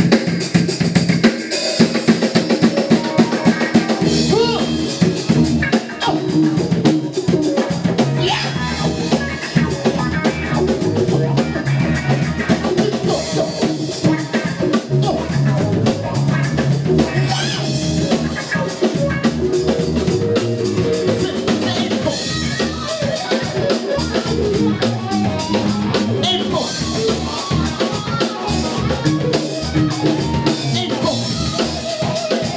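Live band playing, with a drum kit to the fore: steady kick, snare and cymbal hits under electric guitar.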